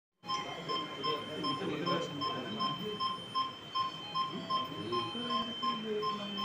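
Intensive-care bedside equipment alarm beeping rapidly and evenly, about two and a half short beeps a second, over a steady high tone, with low voices murmuring.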